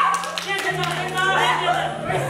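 A few quick hand claps in the first half second, over a pop song playing with a steady bass line, and voices calling out.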